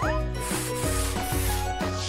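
Cartoon sound effect of a paintbrush scrubbing in short repeated strokes, over light background music.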